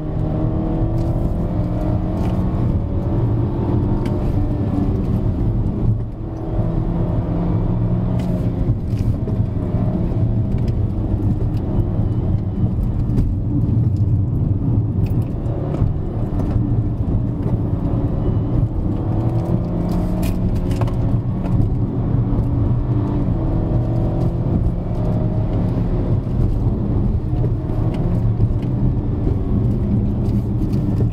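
BMW F30 330i's 2.0-litre turbocharged four-cylinder engine heard from inside the cabin, pulling hard with its pitch rising and falling again and again over steady tyre and road noise. The sound dips briefly about six seconds in.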